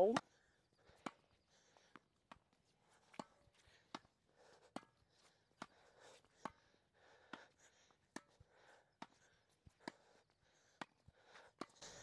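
Tennis ball struck back and forth in a rally of soft slice volleys: short, sharp racket-string pocks about once a second, some louder and some fainter.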